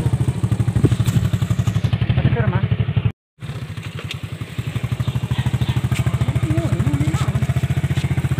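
Motorcycle engine running with a steady rapid putter. It drops out briefly about three seconds in, then carries on, with faint voices over it.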